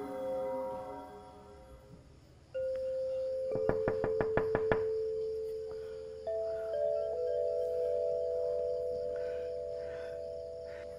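Suspense film score: after a near-quiet dip, sustained ringing tones enter, and more tones join them later. Partway through, a quick run of about eight sharp knocks sounds within a second or so.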